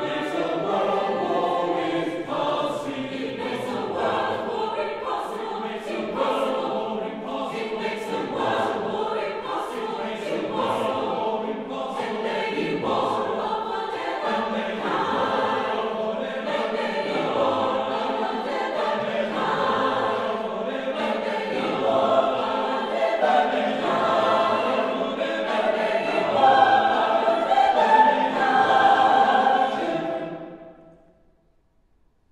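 Mixed choir singing a many-voiced passage, growing louder in the last few seconds and then breaking off.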